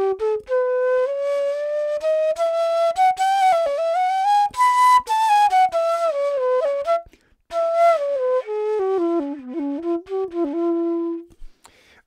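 Hindustani E bansuri, a bamboo transverse flute by Alon Treitel, played solo. A single melodic line climbs from the low notes to a high peak about halfway through and winds back down. There is a short breath break near the middle, and the phrase ends on a long held low note.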